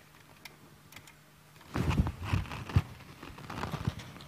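Handling noise: a few faint clicks, then, a little under two seconds in, a run of loud irregular knocks and rustles, the loudest knock near the end.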